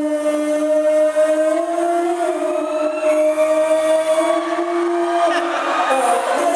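Likay stage-band music: one long, steady held note with a few small steps in pitch, and a fainter line above it.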